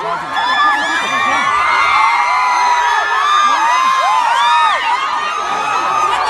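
A dense crowd cheering and screaming, many high voices overlapping in rising and falling shrieks without a break.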